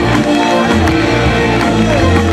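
A live rock band playing loudly, with electric guitar, bass and drums.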